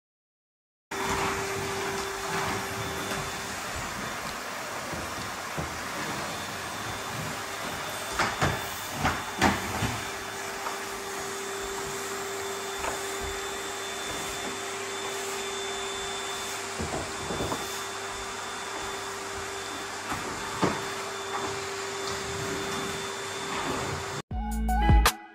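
A steady mechanical hum over a hiss, like a motor running, cutting in abruptly about a second in, with a few short knocks scattered through it.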